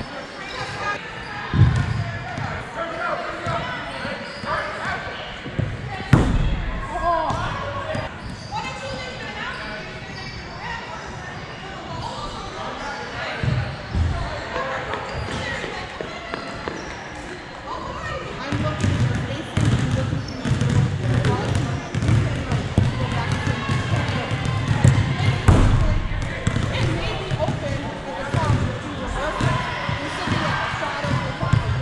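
Indoor soccer game in a large hall: players' voices calling out across the pitch, with sharp thuds of the ball being kicked and striking the boards now and then, the loudest about 2, 6 and 25 seconds in.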